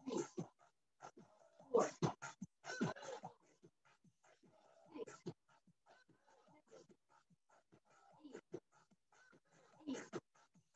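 A person breathing hard, with short voiced exhalations, and feet landing on the floor during a cardio workout. The sounds are irregular, with the loudest bursts about two and three seconds in.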